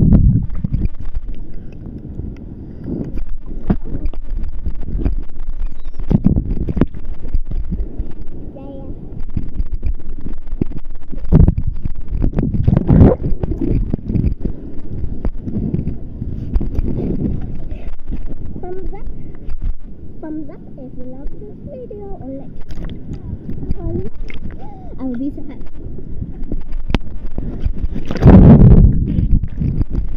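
Sea water churning and splashing around a camera held in the surf, mostly dull and low, in irregular surges; a big wave washes over it near the end.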